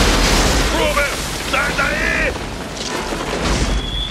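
Film sound effects of an eruption on the asteroid: a loud rumbling blast of noise with deep low rumble, easing after about a second, with men shouting over it. A high steady beep starts near the end.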